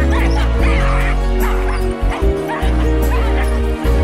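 Music with a heavy sustained bass over harnessed sled dogs barking and yipping in short high calls, eager to run while held back at the start.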